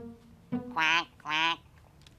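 Two loud, nasal duck quacks in quick succession about a second in, following a plucked double-bass note.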